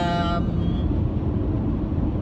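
Steady road and engine rumble inside the cabin of a moving car.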